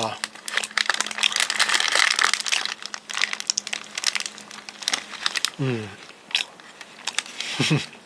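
Close-up crinkling and crackling for about five seconds, followed by two short hummed "mm" sounds.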